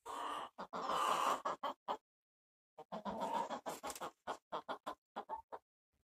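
Rhode Island Red hen clucking in a quick series of short calls, breaking off about two seconds in and then starting again. The owner hears the hen as a little unhappy.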